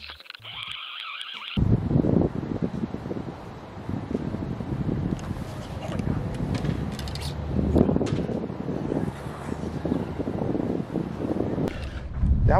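Wind buffeting an outdoor microphone: a heavy, uneven low rumble that rises and falls in gusts, with a few faint clicks. It cuts in suddenly about a second and a half in, replacing a steady high hiss.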